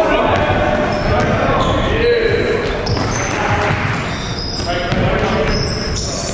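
Basketball game sound in a gym hall: the ball bouncing on the hardwood floor amid players' voices, all echoing in the hall.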